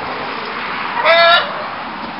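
A chicken gives one short, flat-pitched squawk about a second in, over a steady background hiss.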